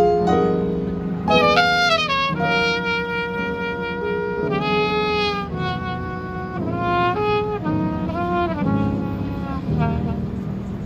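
Trumpet playing a live jazz solo: a quick run of notes about a second and a half in, then a long held note and a string of shorter phrases, with the band's accompaniment underneath.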